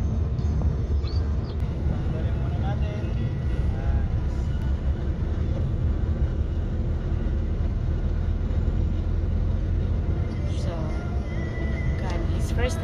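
Steady low rumble of engine and road noise inside a moving car's cabin, with music playing from the car stereo and faint voices over it.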